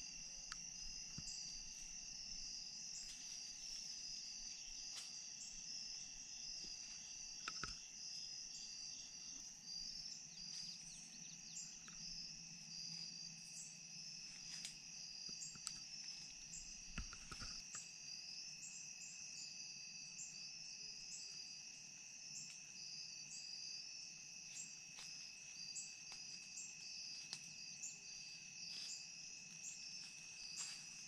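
Crickets and other insects calling in a faint, steady high chorus of rapid pulses with a thinner steady tone beneath it. A few faint clicks and a brief low thump come through about halfway.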